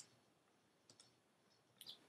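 Near silence broken by a few faint, short clicks: one at the start, a pair about a second in, and a couple just before the end.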